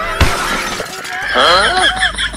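A crash and glass-shattering sound, likely a comedy sound effect since no glass is in the scene, with a sharp impact about a fifth of a second in. A wavering pitched sound follows near the end.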